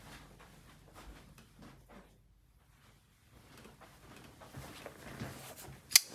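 Faint handling and rustling, with a near-silent stretch, then a single sharp click near the end: a folding knife's blade flicked open and locking.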